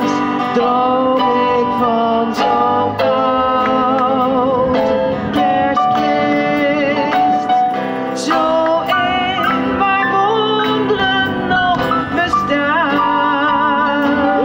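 Live band performing a Christmas carol: several voices singing held, wavering notes over keyboard and plucked-string accompaniment.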